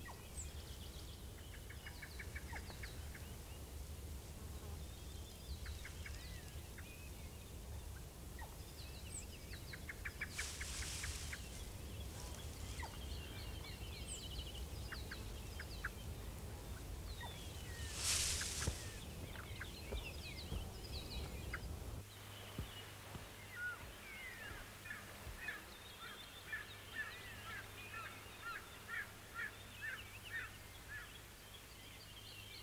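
Faint chirping and twittering of small birds over a low steady hum, with two short bursts of hiss about ten and eighteen seconds in. From about two thirds of the way through, the chirps come as quick falling notes in a regular series.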